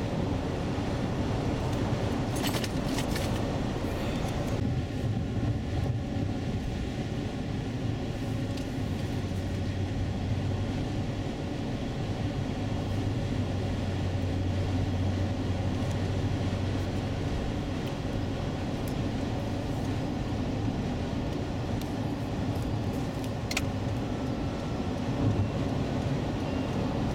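Cabin noise of a 2003 Acura MDX cruising on a highway: a steady low drone of road and engine noise, with a couple of brief clicks.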